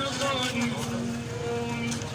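A man's voice intoning Arabic in long, level held notes, over steady street-market bustle and traffic.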